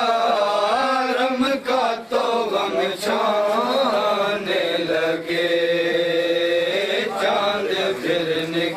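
Men's voices chanting a Muharram noha, a Shia lament, in long held and wavering lines.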